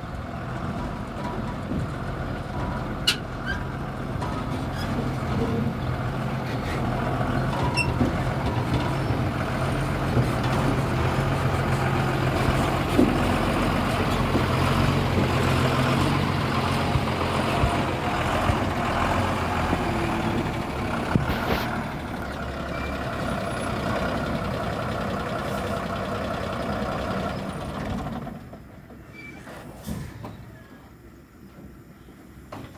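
Diesel engine of a Tata heavy truck running as it manoeuvres at low speed, with a steady low engine hum that grows louder toward the middle and then eases. A few sharp clicks sound over it. The sound drops away about two seconds before the end.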